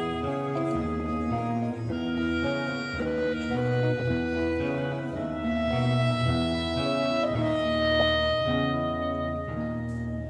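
A live progressive rock band playing an instrumental passage: held melody notes, string-like in tone, over a bass line that steps from note to note.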